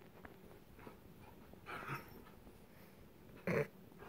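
A corgi and a puppy play-fighting: mostly quiet scuffling, then two short dog vocalisations, a faint one about two seconds in and a louder, brief one near the end.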